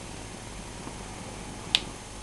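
A single short, sharp click near the end, over a steady low hiss.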